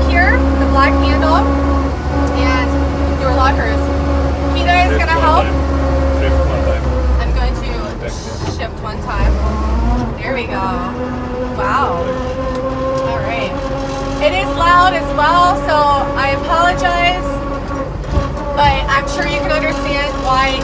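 Steyr-Puch Pinzgauer 710K's 2.5-litre air-cooled four-cylinder engine running, heard from inside the cab as a steady drone under talking; a deep rumble is strong for the first seven seconds or so and then drops away.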